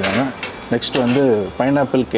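Speech: a voice talking in short phrases, with no other clear sound.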